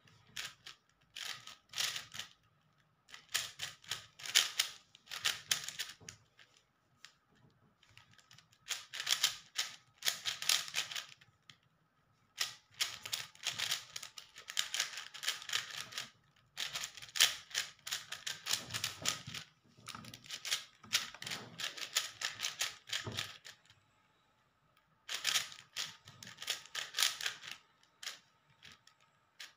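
Plastic puzzle cube being turned fast by hand: quick runs of clicking, clattering layer turns, each a second or two long, broken by short pauses.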